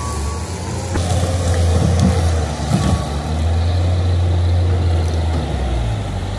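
Bobcat skid-steer loader's diesel engine running steadily under load as the machine digs and pulls tree roots out of the ground, a little louder from about a second in.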